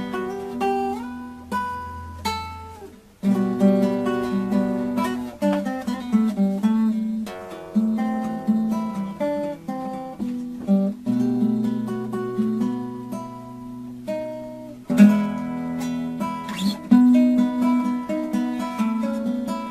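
Solo acoustic guitar playing an instrumental piece, a plucked melody over bass notes in phrases separated by brief pauses.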